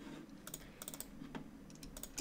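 A few faint, scattered clicks of computer keyboard keys and a mouse as shapes are selected and copied in design software.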